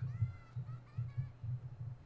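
A man's low, suppressed chuckling in short irregular pulses. A faint high voice from the anime dialogue is heard near the start.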